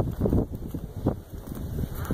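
Wind buffeting the phone's microphone in uneven gusts, a low rumble.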